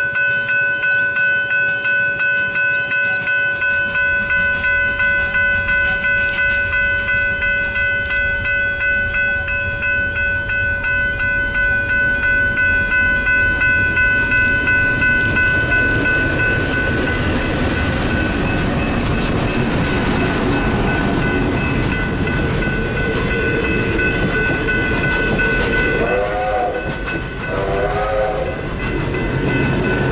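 Level-crossing warning bell ringing in a steady rapid pulse while a train's rumble builds. About halfway through, the Victorian Railways R-class 4-6-4 steam locomotive R707 runs through the crossing tender-first, and the loud rush of steam and wheel noise takes over. Near the end there are two short wavering squeals as the train and a P-class diesel follow past.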